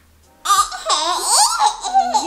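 A baby girl, about eleven months old, laughing in a high voice that slides up and down, starting about half a second in.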